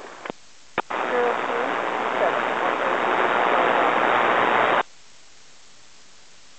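A VHF air-band radio transmission that is mostly static: after a click the channel fills with loud, even hiss for about four seconds, a weak voice barely showing through it, then it cuts off abruptly when the transmitter unkeys. It is a weak, unreadable transmission on the tower frequency.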